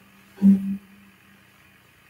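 TV commercial audio in the gap between two ads: one short, low pitched sound about half a second in, then a quiet stretch.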